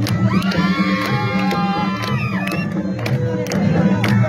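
Crowd cheering and whooping over drum-led Balti folk music for the sword dance. The cheers rise in the first half and die back by about two and a half seconds in, as the drumbeat carries on.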